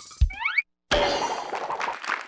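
Cartoon comedy sound effects from a TV show's title sequence: a low thump and a quick rising 'boing', a split-second cut to silence, then a sharp hit into busy jingle music.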